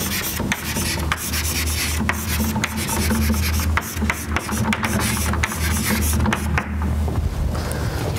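Chalk writing on a blackboard: scratching strokes with many short taps, over a low rumble.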